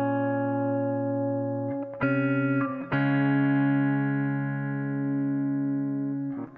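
Hollow-body electric guitar playing long, sustained chords, with a chord change about two seconds in and another about a second later.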